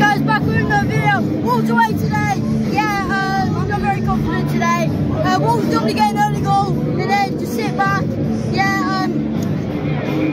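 A boy singing a football chant, holding notes and sliding between them, over a steady low hum.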